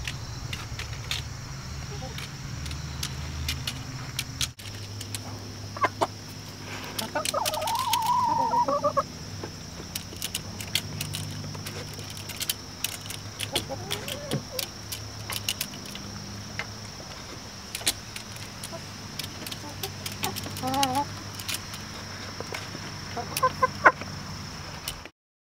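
Hens clucking and giving short warbling calls, with many sharp little clicks, typical of beaks pecking at nipple drinkers, over a steady low hum.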